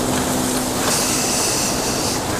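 A loud, steady rushing noise with a low hum, like a vehicle passing close by.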